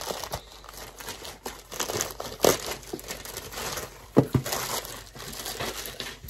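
White plastic mailer bag crinkling and rustling as it is handled and the box is pulled out of it, with a couple of sharp knocks about four seconds in.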